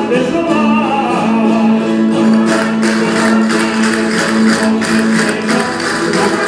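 Live Valencian jota from a rondalla of guitars and other plucked strings, with a sung line holding one long note. About halfway in, a sharp rhythmic clatter joins the accompaniment.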